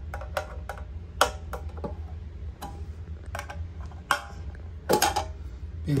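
Metal paint-can opener key prying up the lid of a gallon paint can, making a series of sharp, irregular metal clicks and snaps as it works around the rim, the loudest about a second in and near the end.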